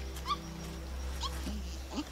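A young ape in a film soundtrack gives two short rising squeaks about a second apart, over a low steady drone from the score.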